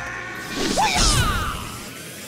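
Intro logo sting of sound effects over music: a whooshing sweep that builds to its loudest about a second in, with a low hit and gliding tones, then tails off.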